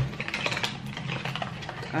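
Hands handling objects: a quick string of light clicks and rustles.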